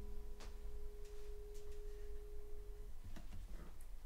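The last chord of an acoustic guitar ringing out and fading, one note lingering until about three seconds in, followed by a few faint clicks.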